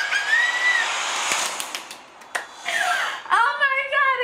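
A woman's thin, high-pitched squeal, like a whine through a covered mouth, then breathy, whimpering noise and a second short squeal. Near the end she breaks into sung, held notes.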